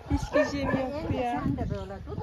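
A dog whining and yipping among women's voices.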